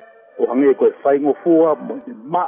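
A man speaking in Tongan. His voice comes in about half a second in, after a short pause that holds a faint steady music tone, and it sounds band-limited like a podcast recording.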